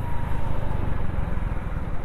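Motorcycle engine running steadily while the bike is ridden along a road, with a continuous low rumble of engine and riding noise.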